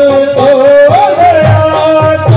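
Live devotional bhajan music played loud through PA loudspeakers: a held melody line with ornamented bends over hand-drum beats.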